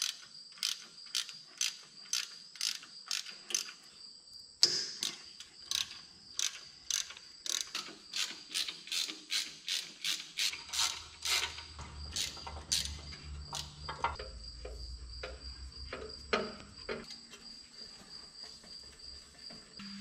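Hand ratchet wrench clicking in quick even runs, about three clicks a second with brief pauses, as it backs out the bolts holding a tractor's steel floor panel. A steady high insect chirring runs underneath, and a low hum comes in for a few seconds partway through.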